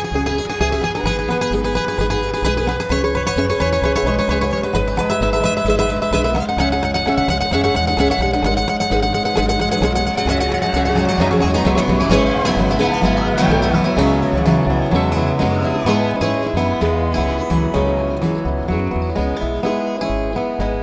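A live bluegrass band playing an instrumental passage with no singing: acoustic guitar, mandolin, banjo and dobro over a steady upright bass pulse. Gliding slide notes come in about halfway through.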